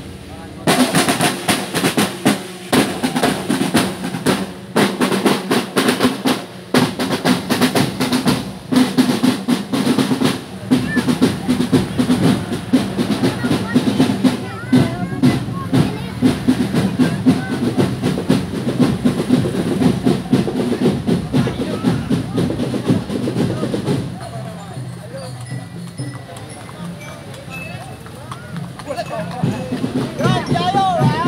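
Marching drum band of snare drums and bass drums playing a steady, fast drum rhythm with rolls, with bell lyres in the band. About three-quarters of the way through the drumming falls away and crowd voices remain.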